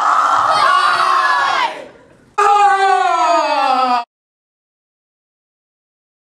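A person screaming: one long high scream, then a second long scream that falls steadily in pitch and cuts off abruptly about four seconds in.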